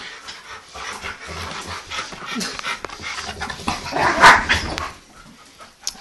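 A chocolate Labrador and a Pitbull puppy playing tug-of-war over a plush toy: irregular scuffling, panting and dog noises, with a louder burst about four seconds in.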